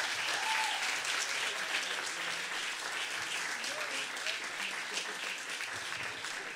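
Audience applauding, gradually dying down, with a few faint voices over the clapping.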